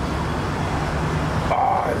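Steady low rumble of street traffic, with a short sound from a man's voice about a second and a half in.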